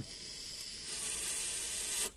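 A vape drag on a Uwell Crown sub-ohm tank fired at 80 watts: a steady hiss of air drawn through the tank and over the hot coil, growing a little louder and cutting off suddenly at the end.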